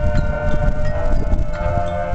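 Marching band playing: held pitched notes, with brass and mallet percussion, over a steady run of drum and percussion strikes.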